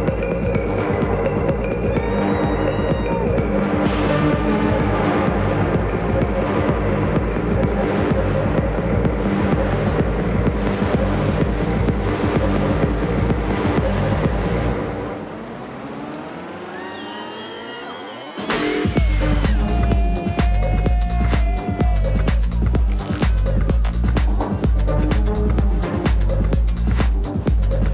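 Electronic dance music played by a DJ, with a steady pulsing bass beat. About fifteen seconds in the bass and beat drop out for a breakdown with a rising sweep, and the full beat comes back in about eighteen and a half seconds in.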